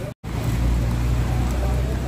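Steady low rumble of road traffic over a hiss of rain, cutting out for a split second near the start.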